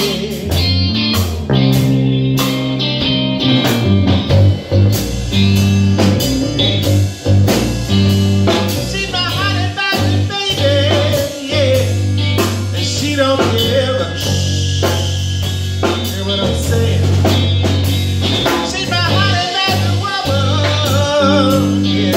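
Live blues-rock band playing an instrumental break: a drum kit keeping the beat under a steady bass line and a wavering lead guitar line.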